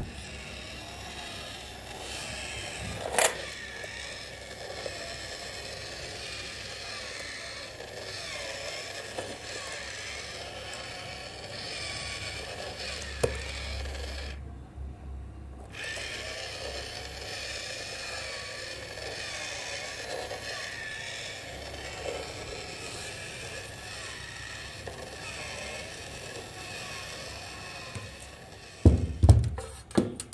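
Small motor and plastic gear mechanism of a face bank toy running, with a couple of sharp clicks.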